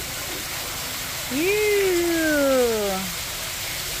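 Steady rush of an artificial waterfall pouring into a shallow pool, with water splashing. A little over a second in, a voice gives one long drawn-out call that slides down in pitch.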